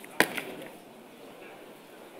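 A sharp knock, with a smaller second one right after it, over faint room murmur.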